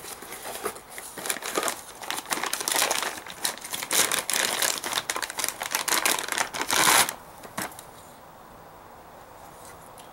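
A clear plastic bag crinkling and rustling as a new tailgate handle is pulled out of it and out of its cardboard box, with small sharp crackles throughout. It stops about seven seconds in, leaving only a faint steady room hum.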